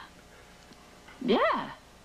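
A person saying a single drawn-out "Yeah" about a second in, with the pitch swooping sharply up and back down, after a second of quiet room tone.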